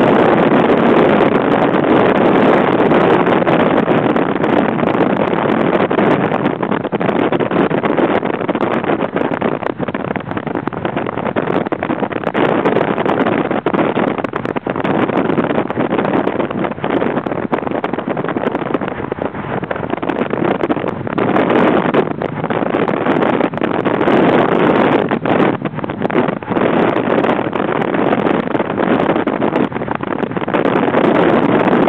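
Car driving at speed: a steady rush of wind and road noise that swells and eases a little.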